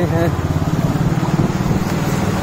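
A small engine running steadily with a low rumble.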